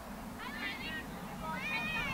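Two high-pitched shouted calls from voices on or around a girls' soccer field, one about half a second in and one near the end, heard at a distance.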